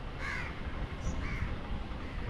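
A crow cawing twice in quick succession, harsh short calls, over a steady low background rumble.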